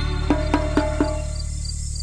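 Intro music: a steady low drone with four short, sharp notes in quick succession in the first second, then fading out. In the second half a faint, high, cricket-like chirp repeats about four times a second.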